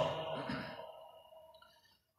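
A man's voice trailing off at the end of a recited phrase, then a soft breath about half a second in, fading to near silence.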